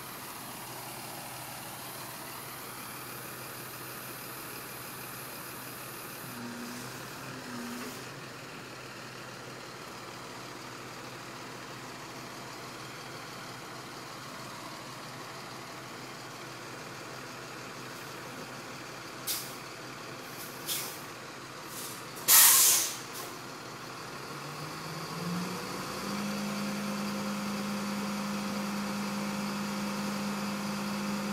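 Flatbed tow truck's engine running steadily, with a few short, sharp air hisses and then one loud, longer hiss about three-quarters of the way through. Soon after, the engine note rises and holds at a higher steady speed.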